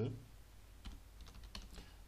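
Typing on a computer keyboard: a handful of light keystrokes, irregularly spaced.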